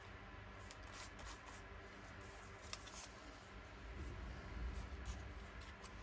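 Faint handling of paper: soft rustling and rubbing as a paper scrap is pressed onto a journal page, with a few light ticks.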